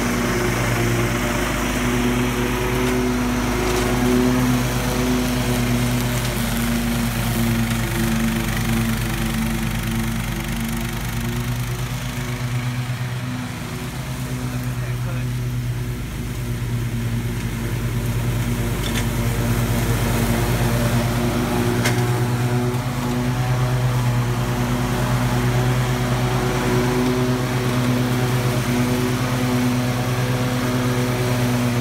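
Toro zero-turn riding mower's engine running steadily under load as it cuts tall grass, dipping slightly in loudness about midway before steadying again.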